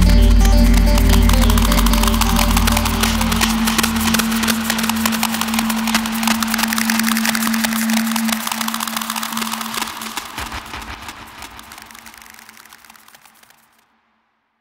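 Electronic music ending: the deep bass and sustained chords drop out within the first few seconds, leaving fast, dense clicking percussion and a held low tone that fade steadily away to silence near the end.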